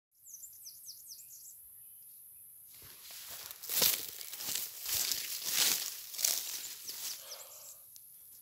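Footsteps crunching and rustling through dry leaves and grass, a series of irregular crackling steps starting about three seconds in and dying away just before the end, as a person walks up and settles on the ground. Under it a steady high-pitched hiss, with a few quick bird chirps near the start.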